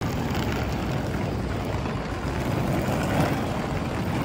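Steady, even outdoor rumble of a city street while walking, with no distinct pitched source.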